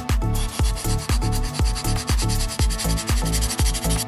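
A nail file rubbing along the cut edge of a piece of cardboard, smoothing it: continuous scratchy filing that starts just after the beginning and stops just before the end. Background music with a steady beat runs underneath.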